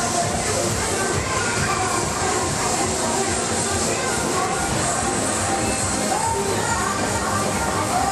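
Fairground ride music playing loudly and without a break, with voices mixed in.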